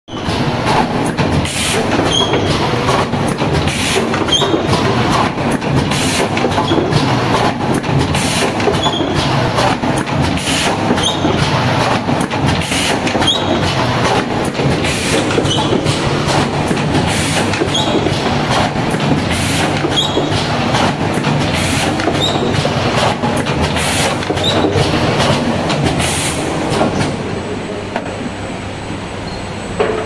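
Pneumatic rigid-box splicing machine running in continuous cycle: a steady mechanical clatter with sharp clacks and air bursts repeating about once or twice a second.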